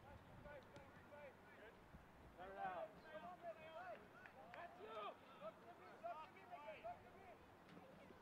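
Faint voices of players calling out across the field, heard from a distance over a low steady background.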